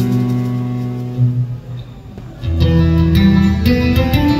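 Flamenco guitar played solo: chords ring and fade away, the playing dips quiet near the middle, then full chords with a deep bass come back in about two and a half seconds in.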